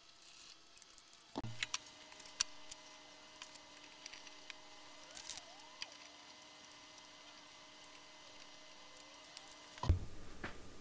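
Faint clicks and light metallic rattles of hex keys and printer parts being handled during 3D-printer assembly, starting with a soft thump about a second in, over a faint steady hum.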